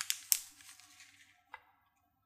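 Metal knife blade scraping and sliding under a slab of mashed potato on baking paper, with crackles of the paper: a few sharp scrapes, the loudest about a third of a second in and one more about one and a half seconds in.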